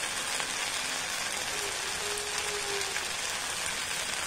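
Onion-tomato masala sizzling steadily in a hot pan, an even frying hiss.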